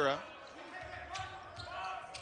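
A basketball being dribbled on a hardwood court, with repeated bounces from about a second in over the steady background of an arena.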